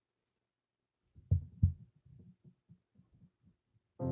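Two heavy low thumps about a third of a second apart, then a run of soft low taps, several a second, that fade out shortly before the end.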